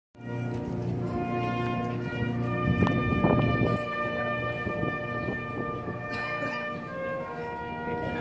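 Cornet-and-drum processional band playing a march: held brass chords, with a louder, noisier passage about three seconds in.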